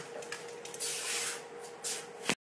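Faint room tone picked up by a phone microphone: a low steady hum with a soft rustle of handling or movement about a second in.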